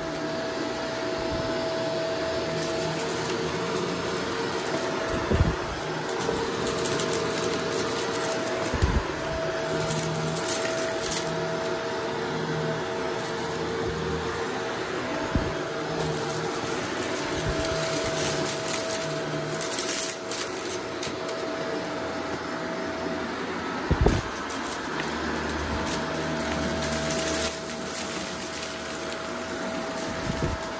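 Shark DuoClean upright vacuum running steadily with its brushroll, sucking confetti and glitter off a rug: a constant motor hum with a steady tone, with bursts of crackling and rattling as debris goes up the nozzle, and a few sharp thumps.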